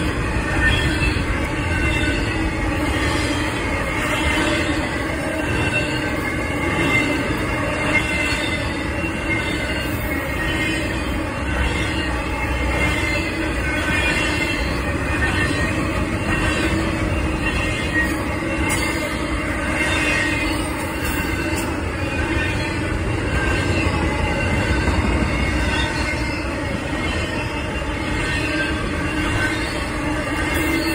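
Double-stack intermodal freight train's cars rolling past at steady speed: a continuous rumble of wheels on rail with a thin high squeal of wheels over it.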